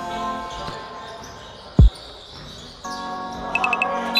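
A basketball bounced once on the court floor: a single dull thud about two seconds in, over faint background music.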